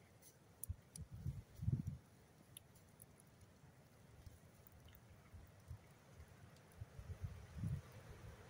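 Faint crackling and ticking from a campfire burning under a pan of food. A few low rumbling bumps sound on the microphone, about one to two seconds in and again near the end.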